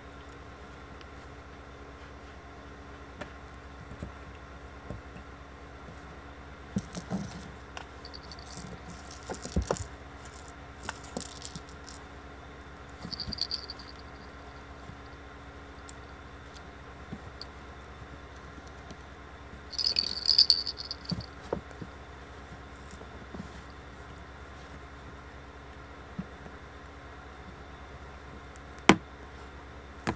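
A baby raccoon playing with small toys: a toy rattling in short bursts, the longest and loudest about twenty seconds in, with scattered light knocks and cloth rustling between them and one sharp click near the end, over a faint steady hum.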